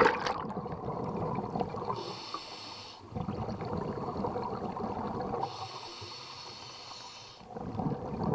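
Scuba regulator breathing underwater: a hissing, faintly whistling inhale through the regulator twice, each followed by a longer exhale of gurgling bubbles.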